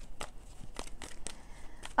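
A deck of tarot cards being shuffled by hand: soft, irregular clicks and rustles of card edges slipping against each other.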